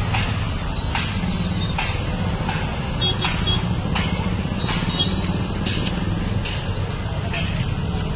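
Steady low rumble of traffic, with light clicks and taps as fried momos are set into aluminium foil trays.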